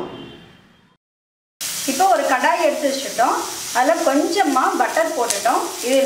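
Diced green capsicum sizzling in butter in an iron kadai as a wooden spatula stirs it. The sizzle starts abruptly about a second and a half in, after a brief silence.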